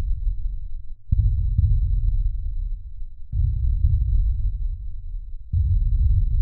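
A slow, heavy heartbeat-like sound effect: deep muffled pulses, one roughly every two seconds.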